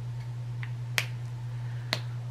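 Two sharp plastic clicks about a second apart, a felt-tip marker's cap being pulled off and clicked back on, over a steady low hum.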